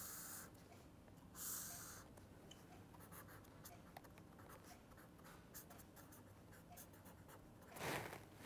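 Pen drawing and writing on paper: two short scratchy strokes in the first two seconds, then faint, scattered small ticks and scratches, and another scratchy stroke at the very end.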